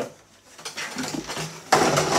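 Plastic RC truck body shell being handled and set aside: rustling and light clattering, with a louder clatter near the end.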